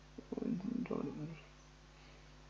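A faint, low wordless murmur from a person's voice, lasting about a second.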